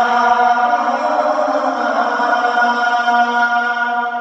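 A man singing the adhan, the Islamic call to prayer, in a high voice in maqam Rast. He holds one long note of "Hayya 'ala-s-salah" into a microphone, with the pitch lifting slightly just after the start and then staying level.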